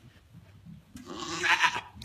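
African Pygmy goat bleating once, a loud, harsh call lasting about a second that starts halfway through.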